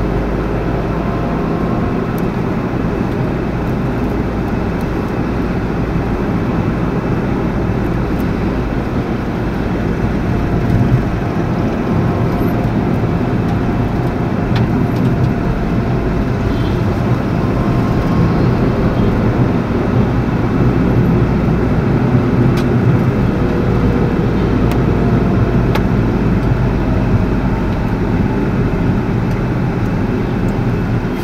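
Inside the cabin of a 2017 Tata Tigor being driven in traffic: steady engine and road noise.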